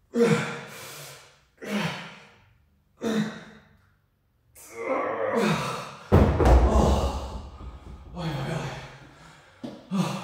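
Hard, voiced exhalations from a man straining through dumbbell rows to failure, one about every second and a half. About six seconds in, a pair of hex dumbbells is set down on rubber gym flooring with a heavy thud, the loudest sound, followed by panting.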